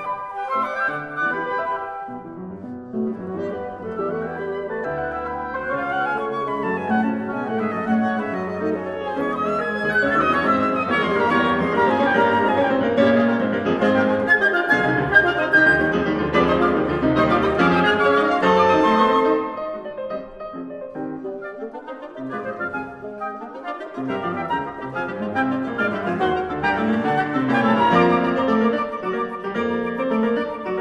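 Piano and woodwind quintet (flute, oboe, clarinet, horn, bassoon) playing the fast Romantic finale of a chamber sextet. A soft, flowing passage swells into loud, detached full-ensemble chords. About two-thirds of the way through it drops back suddenly, then builds up again.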